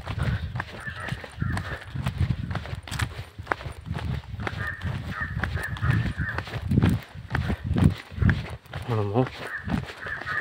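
Footsteps and phone-handling thumps from someone walking along a paved road with a phone in hand, with a man's voice speaking near the end.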